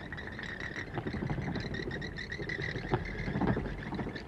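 Bats in a belfry: a dense chatter of rapid squeaks and clicks that grows busier about a second in.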